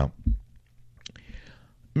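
A brief pause in a man's talk: the end of a word, then near quiet, a small mouth click and a short breath in about a second in, before he speaks again.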